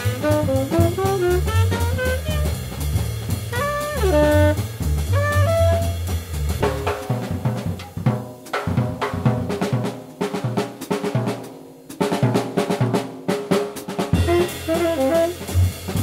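Jazz trio of saxophone, double bass and drum kit playing. The saxophone melody runs over the bass and drums for the first six seconds or so, then the horn and bass drop out for a drum break of cymbal and drum strokes, and all three come back in near the end.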